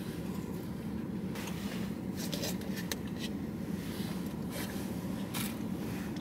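Steady low hum inside a car's cabin, with a few brief clicks and scrapes scattered through it from a fork and a paper food bowl being handled while eating.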